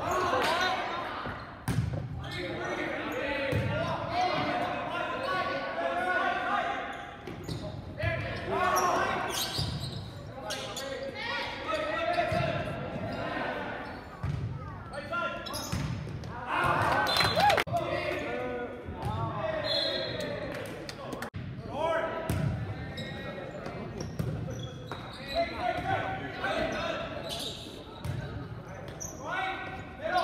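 Players and spectators shouting and cheering through a volleyball rally, with the ball being hit and bouncing off the hard floor now and then, echoing in a large gymnasium.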